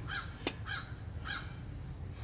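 A crow cawing three times, evenly spaced about half a second apart, with a single sharp click just before the second caw.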